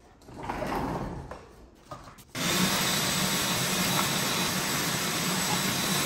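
Shop vac switched on about two seconds in after some handling noise, then running with a steady rushing noise and low hum as it vacuums leaves and debris from a car's front radiator.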